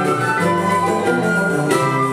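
Live choro ensemble playing an instrumental tune: a wind-instrument melody over a moving bass line, with brass and guitars.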